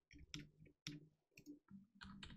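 A few faint, separate computer keyboard keystrokes while code is being typed.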